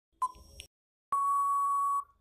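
Quiz countdown timer sound effect: a short electronic beep for the last second of the count, then, about a second in, a long steady beep signalling that time is up.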